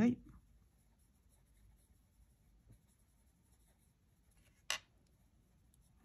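Faint strokes of a coloured pencil shading on paper, with one sharp tap about three-quarters of the way through.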